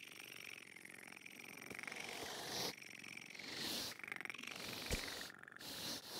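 A cartoon cat purring softly in its sleep, in slow swells like breaths in and out, with a faint click near the end.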